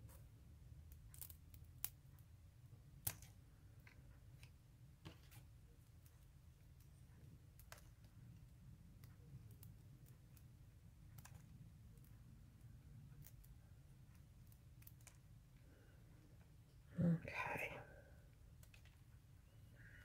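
Small fine-tipped scissors cutting up pink paper flowers: a scatter of faint, short snips spread through, over a low steady hum. A brief murmured voice near the end.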